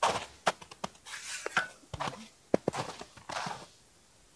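Footsteps crunching in snow on lake ice, a run of irregular steps with a few sharper clicks, stopping shortly before the end.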